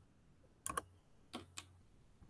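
Four faint clicks in two quick pairs from a computer, as the presenter advances her slideshow to the next slide.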